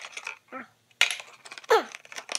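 Cardboard packaging rustling and scraping as a kendama box is opened, with a sharp knock about a second in as a small box drops onto the wooden table. Near the end comes a short squeak that falls in pitch.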